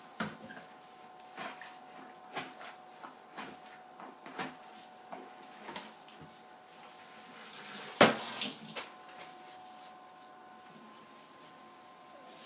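String mop dunked and swished in a plastic bucket of soapy water, with a series of short splashes and knocks against the bucket and one louder splash about eight seconds in.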